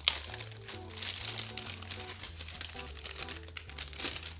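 Clear plastic wrapping crinkling and rustling in rapid, irregular crackles as a small aluminium dock is pulled out of it by hand, over soft background music.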